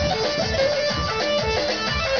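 Live folk dance music for a bar line dance, played on an electronic keyboard: a melody line over a steady beat.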